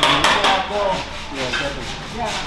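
Rapid scraping strokes, about eight a second, that fade out about half a second in, with a man's voice over them.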